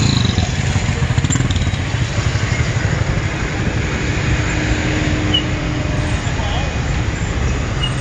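Steady engine rumble and road noise in slow, dense city traffic, with motorcycles and cars running close by. A faint steady tone sounds in the middle.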